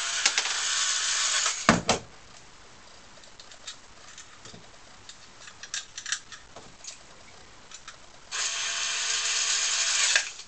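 Cordless screwdriver driving screws into the back plate of a nightlatch case: a steady whirring run of about two seconds that ends in a sharp click, then a second run near the end. In between come faint clicks of the lock being handled.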